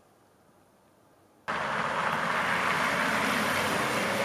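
Near silence, then about a second and a half in a loud, steady noise of a car running close by cuts in abruptly.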